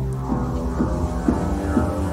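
Omnisphere software synthesizer sounding its lead patch, triggered by keys struck hard in a velocity split. It plays a low sustained pitched tone with a new note starting about twice a second.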